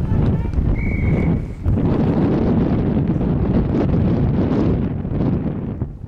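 Wind buffeting the camcorder's built-in microphone, a heavy low rumble that swells about two seconds in and eases off near the end. A short, high, steady whistle blast sounds about a second in.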